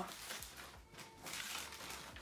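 Tissue paper rustling and crinkling as it is pulled back from a pair of sneakers in a cardboard shoebox, in short irregular crackles.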